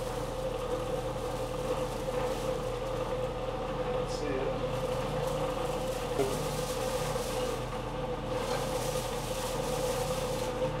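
Electric forge blower running steadily, a constant hum with a steady mid-pitched whine, on its first test run after being wired to its switch.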